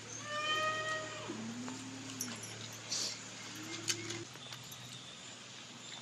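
An animal calling: one high, level-pitched cry lasting about a second, near the start.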